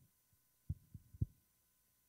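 A few short, low, muffled thumps on a handheld microphone, three in quick succession about a second in: handling noise on the mic.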